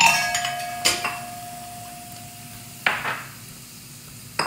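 A metal utensil strikes a stainless steel cooking pan, which rings with one steady tone for nearly three seconds. There is another knock about a second in and a scraping clatter of metal on metal near the end.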